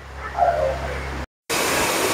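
Low background rumble with a faint distant voice. After a brief dropout it gives way to a steady, fairly loud rushing hiss, like air or machinery noise.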